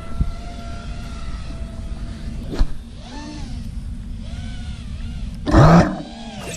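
Small FPV quadcopter's motors whining, with a steady low rumble; the pitch rises and falls with the throttle. Near the end comes a short, loud burst.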